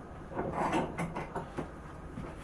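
Light clicks and a short rustle, the sound of hands handling the power hacksaw's vise and frame and a cut-off piece of steel all-thread rod. The saw itself is not running.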